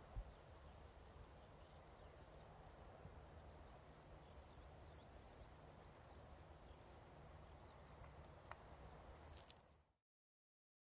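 Near silence: faint steady background hiss and low hum, with a couple of very faint short ticks near the end.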